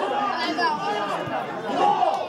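Several spectators' voices talking and calling out over one another close to the microphone.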